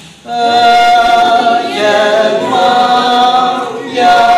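Small mixed choir of women and men singing a Konyak gospel hymn a cappella, coming in together about a quarter second in after a brief pause and moving through long held notes.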